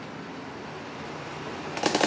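Small electric desk fan running on its lowest speed, its blades covered in taped-on coarse sandpaper, with a steady whir. Near the end a fast, rough clattering starts as the spinning sandpapered blades strike the skin of a bare leg.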